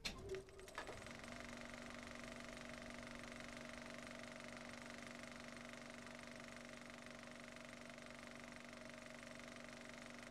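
A few clicks and knocks in the first second, then a faint steady hum made of several held tones.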